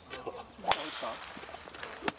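A single sharp crack of a golf club striking a ball, about two-thirds of a second in, with a brief hiss trailing after it.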